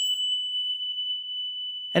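A single bell-like ding: one high, steady ringing tone that slowly fades.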